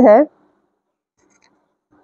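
A woman's voice ends a word in the first moment, then near silence follows.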